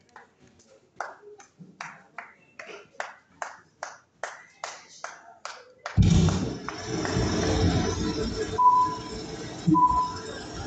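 Sharp taps, about three a second, in a dark hall. About six seconds in, a sudden loud burst of sound comes through the venue's sound system as an opening countdown video starts. Short beeps about a second apart mark the countdown near the end.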